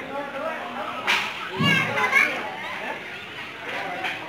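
Crowd chatter with children's voices in a large room, broken by a sharp crack about a second in and a short high shout soon after.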